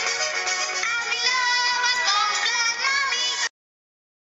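Complan advertising jingle: music with sung, held notes, cutting off suddenly about three and a half seconds in.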